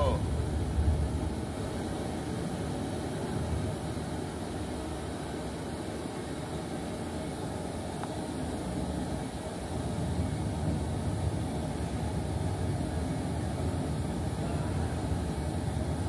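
Steady low rumble of background noise with indistinct voices mixed in.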